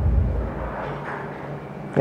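A dull low thump at the start, then a low rumble that fades over about a second, with faint, indistinct voices in the background.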